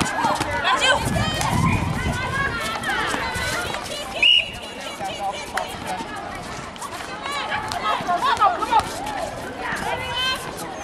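Netball players and spectators calling and shouting across an outdoor court, over the patter of running feet. A short, loud high-pitched sound stands out about four seconds in.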